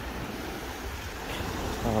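Small waves washing onto a sandy shore in a steady wash of surf, with wind rumbling on the microphone.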